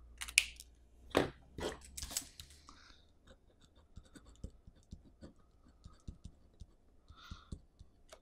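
Pen writing on paper: faint short scratchy strokes as a word is lettered. In the first two seconds or so these follow a few sharp clicks and knocks of pens being handled and swapped.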